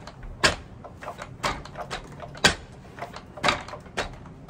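Punches with wrapped fists landing on a makiwara, a padded striking board on a wooden post: four sharp hits about a second apart, with fainter knocks between them.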